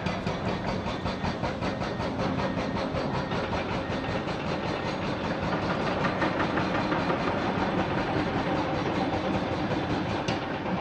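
Hydraulic rock breaker on an excavator hammering rock in a fast, steady run of blows, several a second, over the running of diesel excavator engines.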